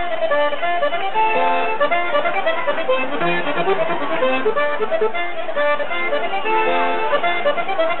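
Basque trikitixa, a diatonic button accordion, playing a fast melody of quick, short notes.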